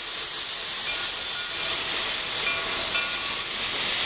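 Steam locomotives hissing steadily as they work past, with escaping steam making a loud, even hiss.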